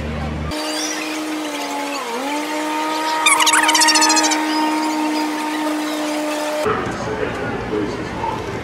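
Riverboat steam whistle blowing one long chord of several tones, which sags in pitch about two seconds in and recovers, then cuts off. A louder burst of noise rises over it about three seconds in.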